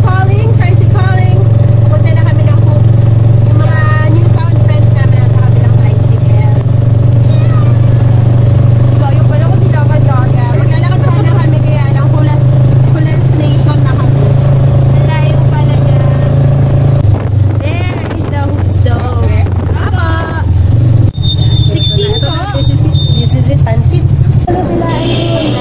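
Motorcycle engine of a tricycle heard from inside its sidecar, running with a loud, steady low hum, with women's voices over it. The engine note dips and wavers about seventeen seconds in, then steadies again near the end.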